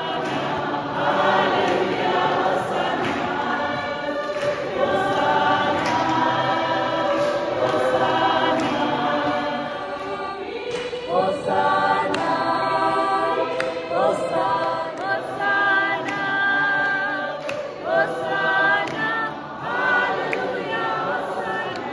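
A church congregation singing a hymn together, many voices at once.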